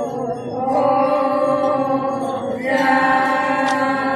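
A group of voices chanting a traditional Konyak song in unison, in long held notes, with a new note taken up about two and a half seconds in.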